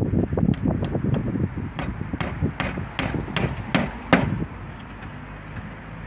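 Claw hammer tapping in the pins of a small nameplate on a timber gate board: about ten sharp knocks at an uneven pace of two or three a second, stopping just after four seconds in.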